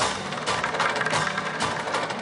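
Background music score of percussion strikes, about two a second, over a low held tone.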